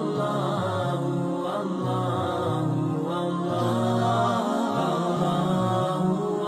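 Devotional vocal chant over background music, the voice holding long, slowly wavering notes.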